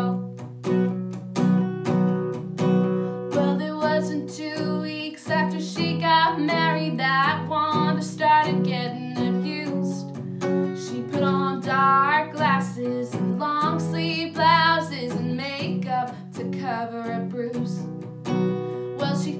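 A woman singing with vibrato to her own strummed acoustic guitar, in a steady country strumming rhythm.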